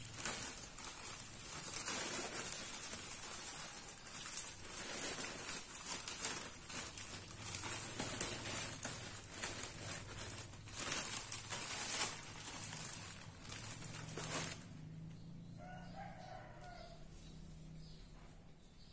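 Dry alang-alang (cogon) grass and a clear plastic bag rustling and crackling as the grass is pushed into the bag by hand, stopping about fourteen seconds in. Soon after, a rooster crows faintly once.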